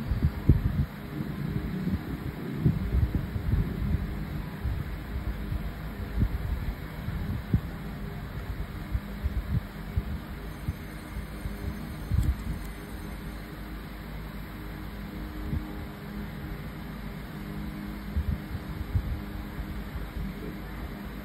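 Low rumble with irregular soft bumps over a steady low hum; a faint high tone comes in about halfway, with a single click.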